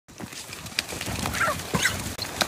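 A chicken squawking in short cries, with a few sharp knocks.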